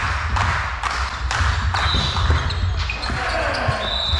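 A ball bouncing on a hardwood sports-hall floor in a steady rhythm, about two bounces a second, each knock ringing on in the large hall. There are short high squeaks, like sports shoes on the wooden floor, about halfway through and near the end.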